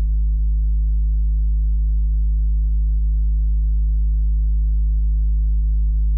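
A single deep bass note from the hip-hop instrumental, held steady and humming on its own with no drums or beat.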